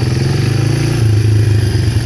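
A four-wheeler (ATV) engine running as the quad drives slowly across grass: a loud, steady, low engine drone.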